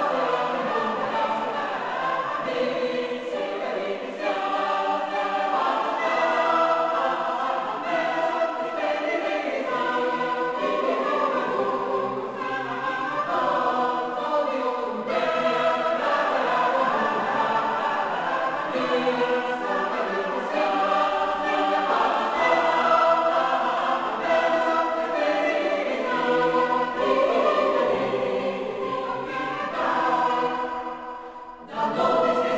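Background music: a choir singing slow, sustained chords.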